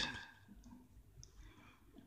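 A quiet pause: a spoken word trails off at the very start, then there are only two faint high clicks a little over half a second apart.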